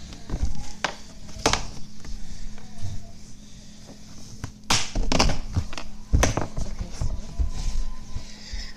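Blankets being handled and spread out right against a phone's microphone: rustling with several sharp knocks and thumps from the phone being bumped, over a steady low hum.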